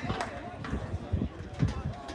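Distant voices calling out across an open sports field, with several low thumps in the second half.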